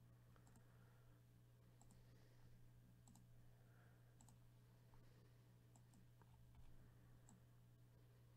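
Near silence, with a handful of faint, scattered computer mouse clicks over a low steady hum.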